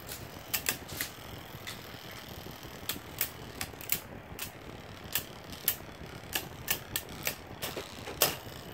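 Two metal-wheeled Beyblade tops, Galeon and Galux, spinning in a plastic stadium and clashing: irregular sharp metallic clicks, two or three a second, over a faint steady whir of their spinning.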